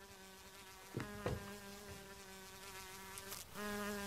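Housefly buzzing in flight: a steady hum that breaks off briefly about three and a half seconds in and returns louder. There are two short faint sounds about a second in.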